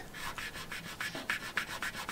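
Faint, scratchy rubbing, several short strokes in a row: a fingertip rubbing across the faded paint of a Volkswagen Beetle's front fender.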